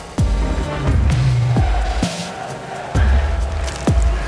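Electronic background music with deep bass hits that fall in pitch, about one every second and a half.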